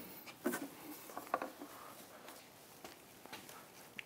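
A few faint knocks and clicks from the top cowling of an outboard motor being lifted off and handled, the clearest about half a second in and again a little later, then smaller ticks.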